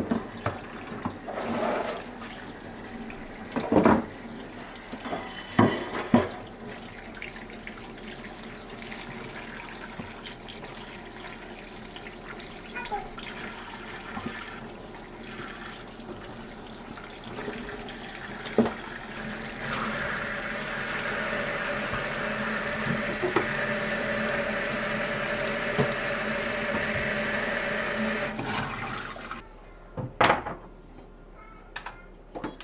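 Tap water running into a stainless steel sink over raw chicken pieces in a metal colander as they are rinsed, with a few sharp knocks from handling. About two-thirds of the way in, the water runs louder, then cuts off suddenly near the end.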